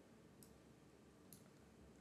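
Near silence with two faint computer mouse clicks about a second apart.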